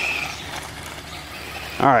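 Losi Promoto MX electric RC motorcycle passing close by on loose gravel, a high motor and drivetrain whine with tyre scrabble that fades quickly as it moves away.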